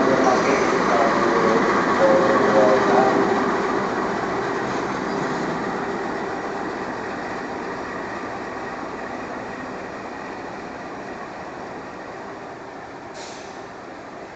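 Passenger coaches and a diesel locomotive of a train being shunted in reverse, rolling past and away. The rolling noise is loudest at first and fades steadily as the train draws off. A brief high-pitched sound comes near the end.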